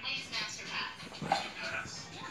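Two bulldogs play-fighting, one giving a short dog vocalisation just past halfway through.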